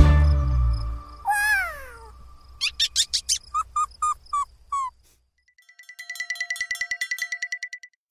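The end of a children's song fades out. A cartoon mouse then gives one falling squeal and a string of short, high squeaks. Near the end a tinkling chime rings with a fast trill.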